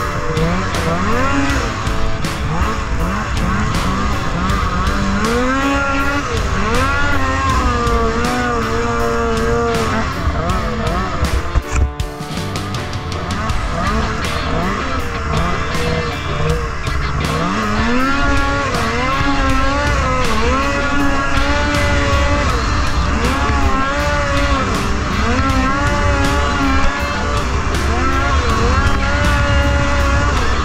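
Polaris IQR 600R snowmobile's two-stroke engine revving up and down over and over as the sled is ridden hard across snow. About twelve seconds in, the engine sound briefly drops away.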